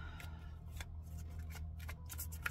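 A deck of tarot cards being gathered up and shuffled by hand: a run of short, crisp card snaps and clicks at an uneven pace.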